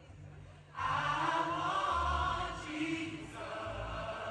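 Large gospel choir singing over a live band with bass guitar, the voices coming in loudly just under a second in.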